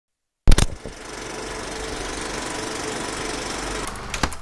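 Old film projector sound effect: a few sharp clicks about half a second in, then a steady, fast mechanical clatter that stops just before the end.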